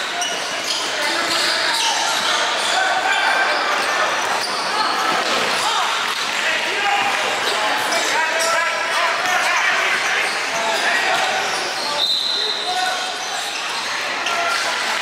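Live basketball game sound in a large gym: the ball dribbling on the court, sneakers squeaking and players and spectators talking and calling out, with a brief high squeak near the end.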